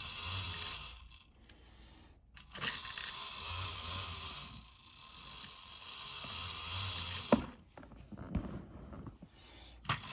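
Clockwork spring motor of a 1950s Alps Mr. Robot the Mechanical Brain tin wind-up robot running as it walks, a whirring gear buzz with the tin body rattling. The sound fades for a second or so twice, and there are two sharp clicks in the second half.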